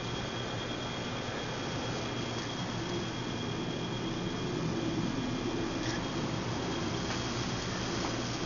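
Steady outdoor night ambience: an even hiss with a faint, steady high-pitched tone running through it. No frog is calling.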